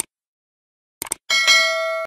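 Subscribe-animation sound effects: short mouse clicks, then a bell chime that starts about a second and a quarter in and rings on steadily.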